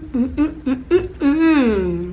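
A woman's closed-mouth 'mm' sounds of enjoyment while tasting a hamburger: several short hums, then a longer 'mmm' that falls in pitch.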